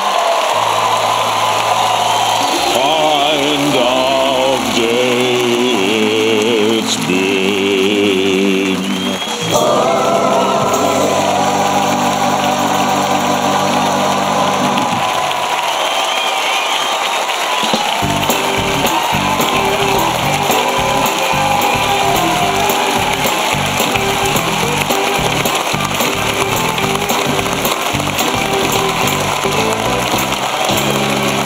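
Gospel-style choir singing over held chords, with wavering vocal lines. About eighteen seconds in it gives way to upbeat music with a steady beat.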